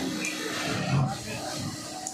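Background noise of a garment workshop: industrial sewing machines running, with faint voices in the room and a low swell about a second in.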